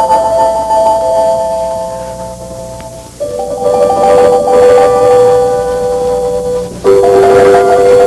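Slow piano chords, each struck and left to ring and fade, with a new chord about three seconds in and another about seven seconds in.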